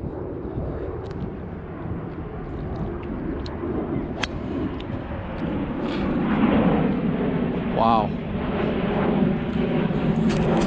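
A golf driver striking a ball off the tee: one sharp click a little over four seconds in. It sits over a steady low rumble that grows louder in the second half.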